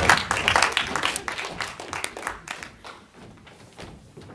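Live audience laughing and clapping in response to a punchline, loud at first and dying down over about three seconds.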